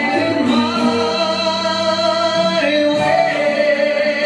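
Recorded Latin-style dance music with a singer holding long notes: one held for about two seconds, then a change to another held note about two and a half seconds in.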